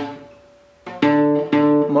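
Single fretted notes plucked on a nylon-string classical guitar: one note dies away early, then after a brief gap two more notes sound about half a second apart.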